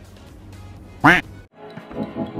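A single short, loud quack-like call about a second in, its pitch rising then falling, over a low steady hum. After a brief silence, background music starts near the end.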